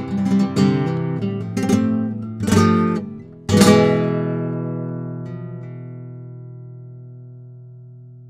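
Kremona Solea nylon-string classical guitar with cedar top and cocobolo back and sides, played with the fingers: a run of plucked notes and chords, then a loud final chord about three and a half seconds in that rings out and slowly fades away.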